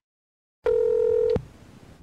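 A single steady electronic beep, about three-quarters of a second long, that comes in after a moment of silence and cuts off with a click.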